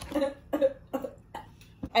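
A young woman coughing: several short coughs spread over two seconds. She is sick with a cold.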